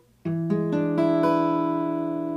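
Acoustic guitar with a capo at the fifth fret playing a B7 chord shape (sounding as E7). Starting about a quarter second in, the strings are picked one at a time from the lowest to the highest over about a second, then left to ring together.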